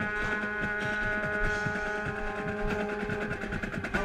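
Marching band brass, led by a mellophone right at the microphone, holding one long sustained chord over a quick, steady ticking beat; the chord changes at the very end.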